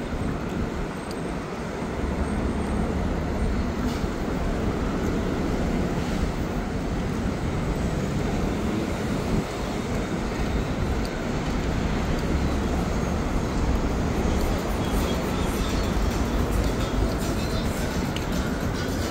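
Steady city street traffic noise from cars at a busy downtown intersection, a continuous wash with a heavy low rumble.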